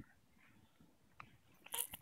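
Near silence: quiet room tone, broken by a faint click about a second in and a brief soft sound near the end.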